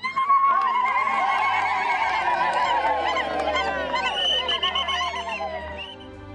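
Several women ululating together in celebration: high, rapidly trilling calls that overlap. They start all at once and ease off near the end.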